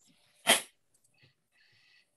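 A single short, sharp burst of noise about half a second in, heard over a video-call line.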